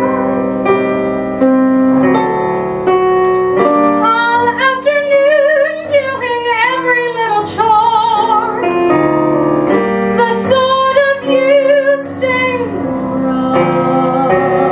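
Soprano singing a show-tune ballad with piano accompaniment, holding long notes with a wide vibrato over piano chords.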